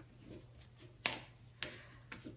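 Quiet handling sounds: two small sharp taps about half a second apart as a plastic milk bottle is picked up from a wooden tabletop.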